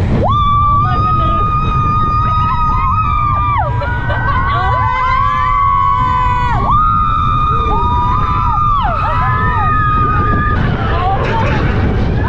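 Roller coaster riders screaming in long, held cries of about two to three seconds each, sometimes two voices at once, over a steady low rumble.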